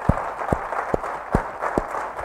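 An audience applauding, with sharp single claps standing out two or three times a second over a softer spread of clapping.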